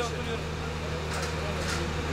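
Idling vehicle engine giving a steady low hum, with faint voices of people talking in the background.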